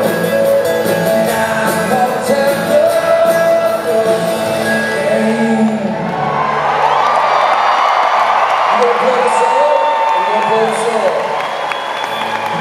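Rock band playing live, with drums, guitars and singing, until the music stops about six seconds in. The crowd then cheers and whoops while a few held notes ring on.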